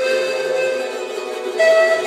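Live amplified music on a small mandolin-like stringed instrument, with long held notes; a louder, higher note comes in about one and a half seconds in.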